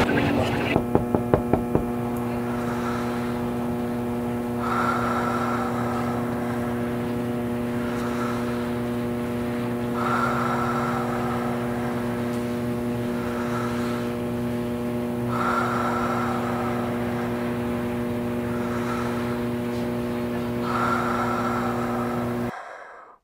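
Background music: a sustained, unchanging chord with a short brighter figure returning about every five seconds, and a few quick ticks about a second in.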